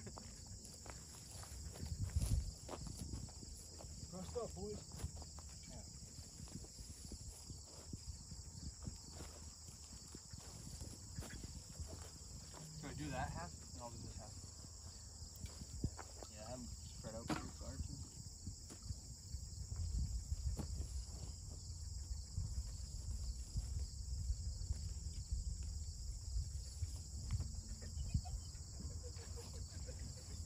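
Steady high-pitched insect chorus, typical of field crickets, with faint rustling and soft thuds of the hunters handling the birds and a few faint voices.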